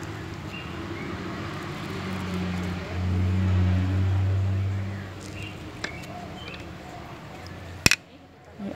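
Light clicks and scrapes of a metal spoon scooping ripe avocado flesh from the skin, over a steady low hum that swells for a couple of seconds midway. A single sharp click sounds just before the end.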